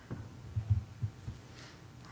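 A few low thumps and bumps, the loudest about two-thirds of a second in, as papers or a Bible are set down and handled on a wooden pulpit, picked up through the pulpit microphone.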